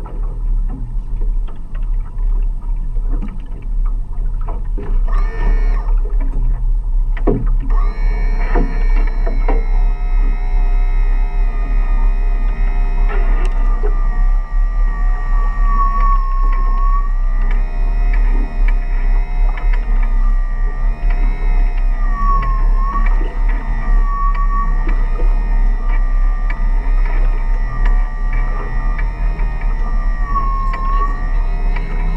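Motor of a davit-mounted crab pot puller whining steadily as it hauls in a pot line, starting after a few knocks several seconds in. Its pitch dips briefly several times, over a low steady rumble.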